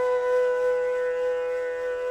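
Bansuri (Indian bamboo flute) holding one long, steady note in a Hindustani raga, slowly fading.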